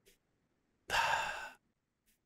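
A man's single breathy sigh, about a second in and lasting under a second.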